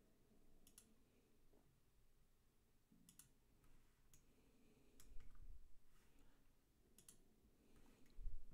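Faint computer mouse clicks: about five short click events spread out over the stretch, several of them quick double clicks, over near-silent room tone.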